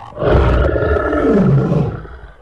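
Two men yelling together in one long, loud roar whose pitch falls steadily before it cuts off.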